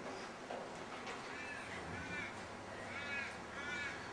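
Faint bird calls: about four short calls in the second half, each rising and falling in pitch.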